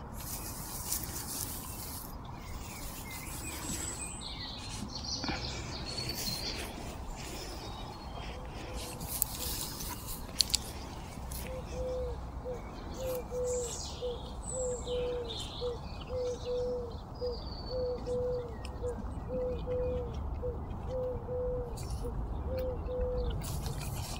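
A bird repeats a low, level cooing note just over once a second, starting about halfway through and running for about twelve seconds. Small birds chirp high above it.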